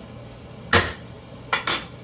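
A metal spoon knocking against a stainless-steel skillet to shake off what it is adding to the butter: one sharp clink about a third of the way in, then two quicker clinks near the end, each ringing briefly.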